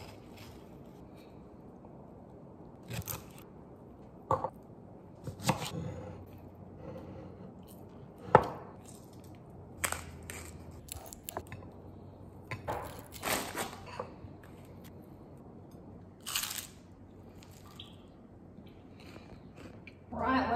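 Kitchen food preparation: a knife cutting into an avocado on a wooden chopping board, then the flesh being scooped and worked in a ceramic bowl. It comes as a series of separate knocks, clicks and scrapes, the sharpest about eight seconds in.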